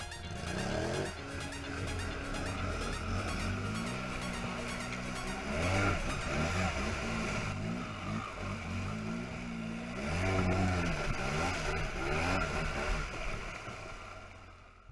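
ATV engine revving, its pitch climbing and dropping again and again with the throttle, loudest about six seconds in and again around ten seconds, as the quad drives through muddy water.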